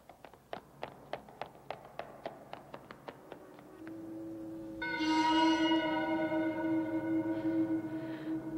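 Quick running footsteps on a hallway floor, about three a second, growing fainter as they move away. Then a low held note comes in, and about five seconds in a loud music chord of several sustained notes swells up and holds.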